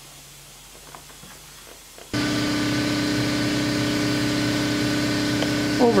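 Faint steady room hum with a few small ticks, then about two seconds in a much louder, steady mechanical hum made of several even tones cuts in suddenly and holds.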